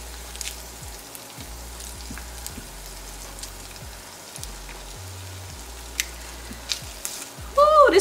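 Shredded meat and tortillas sizzling in a hot nonstick frying pan, a steady frying hiss with a few light clicks of metal tongs. A voice comes in near the end.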